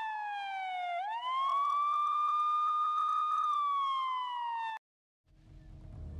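Police siren wailing: a slow falling tone, then a sweep up that holds for a couple of seconds before falling again, cut off abruptly about five seconds in.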